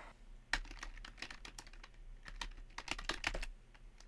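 Computer keyboard typing: a quiet run of quick, irregular key clicks lasting about three seconds, a web address being typed into the browser's address bar.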